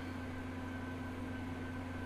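Steady background hum and hiss with a few constant tones and no distinct events: the room tone of the recording setup.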